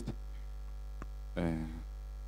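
Steady low electrical mains hum through the microphone and sound system, with a faint click about a second in and a short hesitant 'uh' from the man at the microphone.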